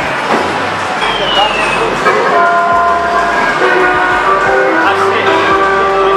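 Busy arcade noise: music with low bass notes, and from about two seconds in several held electronic tones, over a constant din of chatter.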